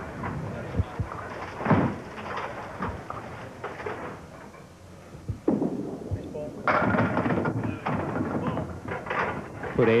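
A candlepin bowling ball strikes a rack of wooden candlepins, with a loud clatter of pins falling about two-thirds of the way in.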